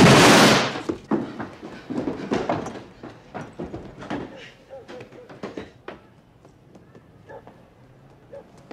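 A loud bang right at the start with a noisy tail of about a second, followed by a scatter of quieter knocks and thuds that die away over the next few seconds.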